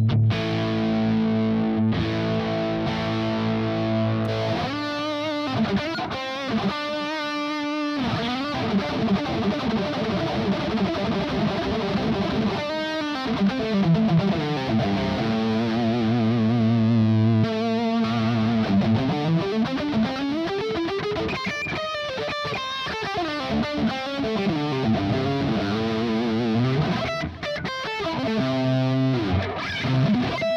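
Stagg electric guitar with P90 pickups played through an amp with effects: sustained chords for the first few seconds, then picked note lines and chords, with the pitch wavering in places.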